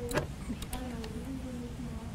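A faint, distant voice off the microphone, drawn out in one long held sound, with a few sharp clicks in the first second.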